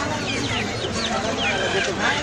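Market poultry calling, a quick string of short high calls several a second, over the chatter of a crowd.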